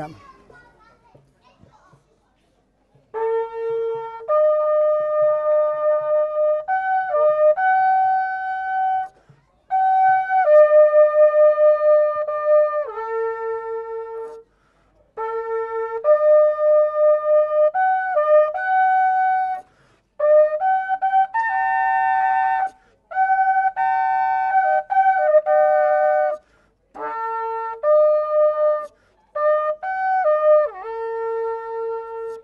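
A long spiralled Yemenite-style shofar played as a melody, starting about three seconds in. Held horn notes step between a few pitches in phrases of several seconds, with short breaks for breath between them.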